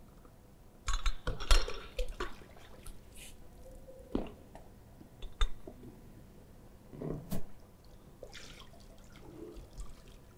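Steel CBR moulds lifted out of a water soaking tank: metal clinks and knocks with water splashing and dripping, in a busy cluster about a second in, single knocks around four and five seconds, and another cluster near seven seconds.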